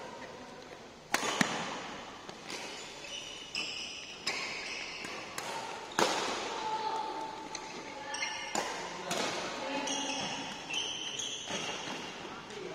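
Badminton rally: rackets striking the shuttlecock, sharp smacks at irregular intervals, with the loudest about a second in and about halfway through, each ringing briefly in a large echoing hall.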